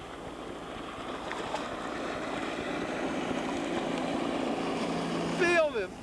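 Motorboat engine running across the water, growing gradually louder, with a low steady hum coming in during the second half.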